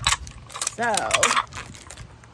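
Small ceramic plates being unpacked and handled, giving a few short sharp clicks and clinks.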